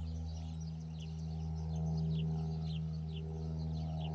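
A steady, low-pitched machine hum holding one pitch, with small birds chirping over it in short, quick falling notes.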